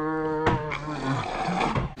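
A person's long, drawn-out playful yell held on one slightly wavering pitch, ending a little over a second in, followed by quieter voice sounds.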